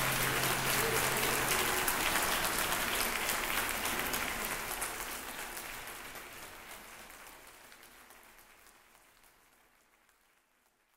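Audience applauding, with the low last note of the string trio dying away in the first second or so; the applause then fades out steadily over the second half.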